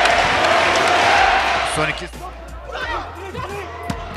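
Volleyball arena crowd cheering after a point, cut off about halfway through to a quieter crowd under a commentator's voice. Just before the end, a single sharp smack of a volleyball being spiked.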